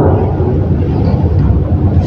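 A steady low rumbling noise with no voice in it, about as loud as the speech around it.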